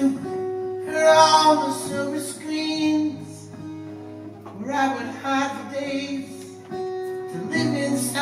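Twelve-string acoustic guitar strummed in a slow song while a man sings live into a microphone. The voice comes in about a second in and again around the middle, with guitar chords ringing between the sung lines.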